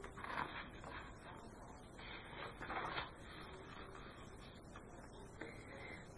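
Soft rustling of paper book pages being handled and turned, in a few short bursts during the first three seconds.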